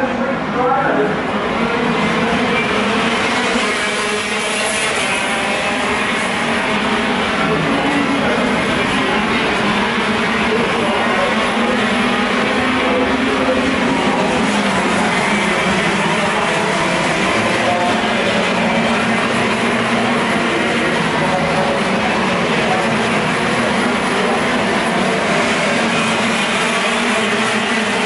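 A pack of KZ2 gearbox karts racing, their 125cc two-stroke engines overlapping in a dense, continuous buzz. Many engine notes rise and fall against one another as the karts pass.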